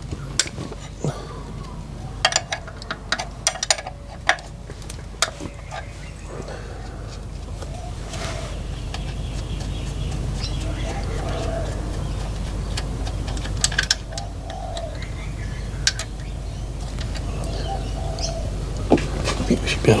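A 17 mm spanner working the high-pressure fuel line nut on a diesel injector: scattered light metallic clicks and clinks, most of them in the first few seconds, over a steady low rumble.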